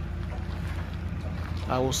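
Steady low outdoor rumble with a faint hum, and a man starts speaking near the end.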